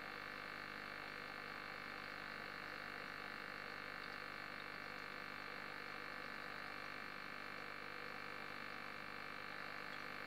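Aquarium filter running: a steady hum and hiss of water and air that does not change.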